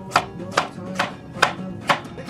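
A chef's knife slicing through a vegetable and knocking on a wooden cutting board: five sharp chops at an even pace, about two a second.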